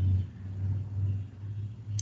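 A low background rumble that swells and fades several times.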